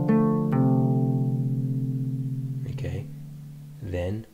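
Kora, the West African harp, tuned in F: two plucked notes of a bass pattern at the start, then the strings ringing on and fading away over the next couple of seconds. A brief voice sound comes near the end.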